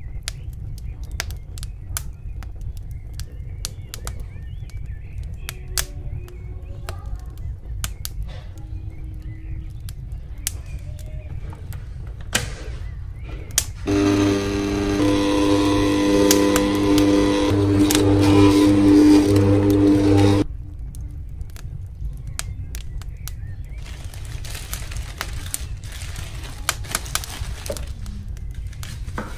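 Bosch stand mixer motor starts abruptly about halfway through and runs steadily for about six seconds as the hook kneads dough, slowly getting louder, then cuts off. Before and after it come scattered light clicks and knocks.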